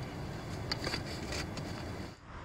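Faint light scratches and clicks as fingers pick through ash and small charcoal pieces on the stove's metal mesh grate, over a steady low outdoor rumble.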